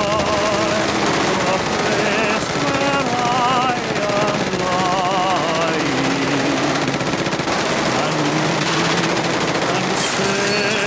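Long continuous burst of Thompson submachine gun fire, a rapid unbroken rattle of shots. Over it a man sings a slow ballad with heavy vibrato.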